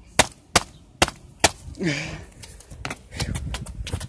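Four sharp taps about half a second apart, followed by a brief vocal sound and the low rumble of the camera being moved around.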